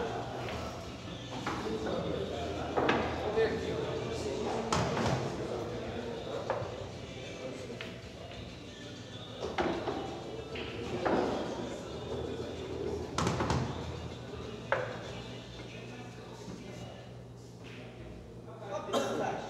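Sharp knocks of cue and billiard balls on a pool table, several spread over the stretch, with indistinct murmured talk from onlookers in a hard-walled room.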